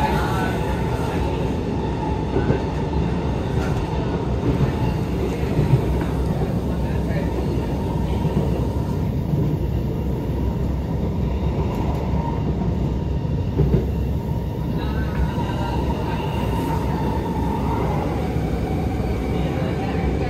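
Alstom Movia R151 metro train heard from inside the car while running between stations: a steady low rumble of wheels on rail with a steady high whine above it, and a few brief clicks.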